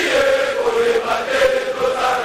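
A large group of men chanting in unison, many voices on a few held, slowly shifting notes: a drill song sung by army recruits moving in formation.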